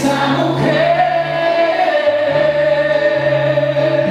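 Male pop singer singing live into a handheld microphone, holding one long, slightly wavering note over a backing track with sustained bass notes.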